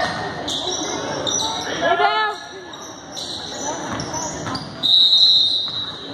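Basketball game noise echoing in a gym: a ball bouncing on the hardwood floor, players' and spectators' voices, and a shout about two seconds in. A loud, high-pitched squeal sounds for about a second near the end.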